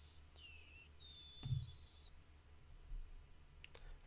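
Mostly quiet room tone with a few faint computer mouse clicks and a soft thump about a second and a half in.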